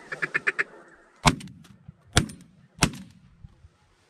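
A short, quick run of duck quacks, then three shotgun shots in under two seconds, the first about a second in.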